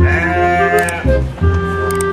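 A goat bleats once, for about a second at the start, over background music.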